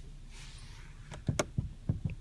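A faint rustle, then several light plastic clicks and taps in the second half: a finger working the rear overhead light switch in the cabin of a Ford Explorer.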